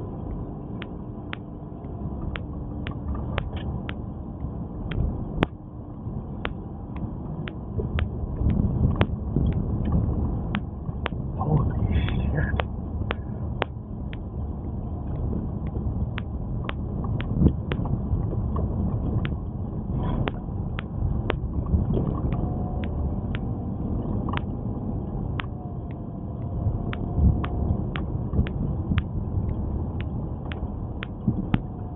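Car driving over a snow- and ice-covered road: a steady low rumble of tyres and engine, heavier in stretches, with a run of sharp ticks about twice a second throughout.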